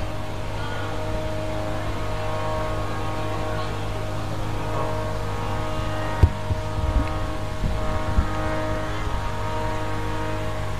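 Harmonium holding a sustained chord between sung lines of kirtan, with a steady low hum beneath it and a few soft knocks in the second half.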